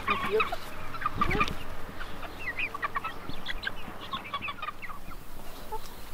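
A flock of young Appenzeller chickens, Barthühner mixed with Appenzeller Spitzhauben, clucking and calling, many short high calls overlapping.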